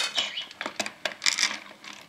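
Dry kibble in an automatic pet feeder's stainless-steel bowl, the last pieces dropping and rattling as light, scattered clicks that tail off.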